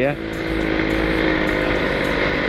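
Two-stroke motorcycle engine running at a steady cruise, its note holding one pitch, heard from the rider's seat.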